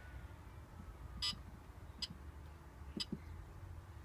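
A few short clicks from the push buttons of a Bartlett 3K kiln controller being pressed, over a low steady hum.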